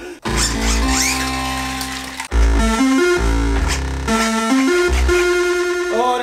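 Electronic synthesizer music: held notes stepping from pitch to pitch every half second or so over a deep bass.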